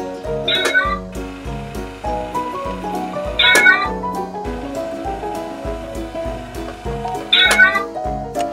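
A cat's meow, short and heard three times about three seconds apart, over background music with piano-like notes and a steady beat.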